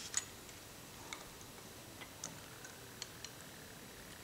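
Faint, irregular small ticks and clicks, about seven in all, the sharpest just after the start. They come from a plastic syringe slowly pushing a hydrogen–oxygen mixture into soapy bubble solution in a small pot as the bubbles form.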